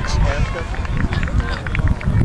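Faint voices of players and spectators across an open soccer field over a low, uneven rumble on the microphone.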